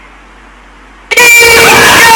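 About a second in, a sudden, very loud, blaring horn cuts in and holds, with a slightly wavering pitch.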